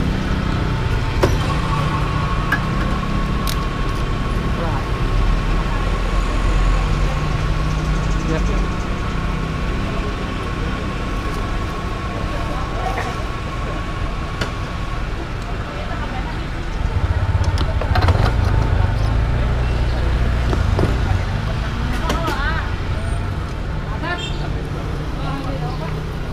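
Petrol station fuel dispenser pumping fuel into a scooter's tank, with a steady thin whine for the first fifteen seconds or so, over the low rumble of idling motorcycle engines. The engine rumble grows louder about two-thirds of the way through.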